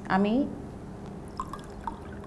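Water poured from a plastic jug into a stemmed glass, a faint trickle with a couple of small dripping plinks in the second half.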